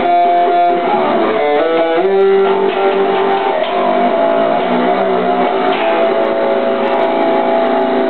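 A single plucked electric string instrument playing a solo of chords and melodic runs, with quick changing notes for the first two seconds and longer ringing notes after that.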